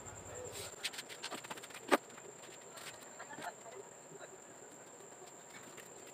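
Light clicks and taps of a small metal screw being handled, with one sharp click about two seconds in, then only faint low sound.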